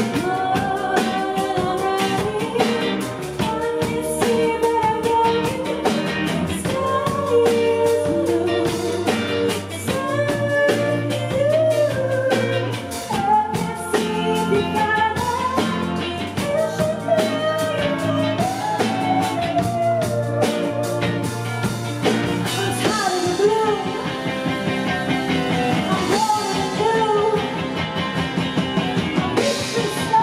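A woman singing lead vocals live with a rock band: electric guitar, bass, keyboard and drum kit. About two-thirds of the way through, the bass shifts lower and the cymbals thin out.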